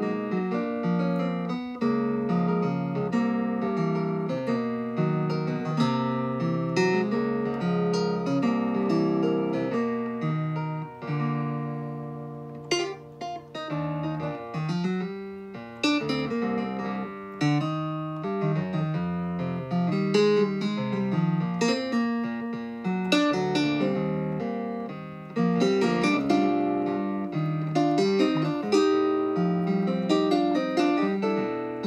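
Yamaha Reface DX FM synthesizer played solo, chords and melody in a continuous arrangement, with a softer, sparser passage about halfway through.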